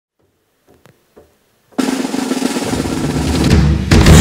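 A few faint taps, then a snare drum roll starts suddenly and grows steadily louder for about two seconds, cutting off just before the end, as the build-up into the band's first number.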